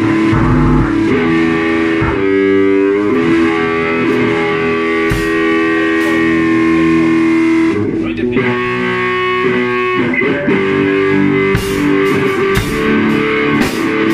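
Live band jamming: electric guitar playing long held notes over bass. Drum strokes with cymbal hits come in about two-thirds of the way through.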